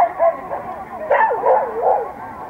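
A dog barking in short barks: a couple near the start, then a quick run of about four in the second half.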